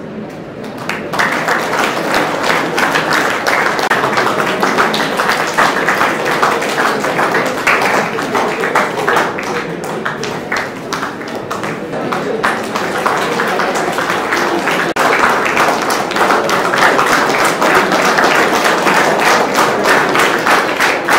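Audience applauding: dense hand-clapping that starts about a second in, eases a little midway, breaks off for an instant about fifteen seconds in, and then picks up again.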